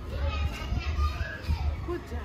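Children's voices talking and playing, high-pitched, over a steady low rumble.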